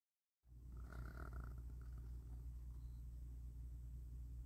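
Faint, steady low hum of room tone, with no distinct event. It starts about half a second in, after a moment of silence.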